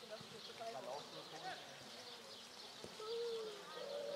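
Faint, indistinct voices of people talking over a steady outdoor hiss, with no clear words.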